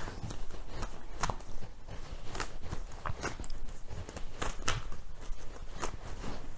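Oracle cards being shuffled and handled by hand, a run of irregular light clicks and snaps of card against card.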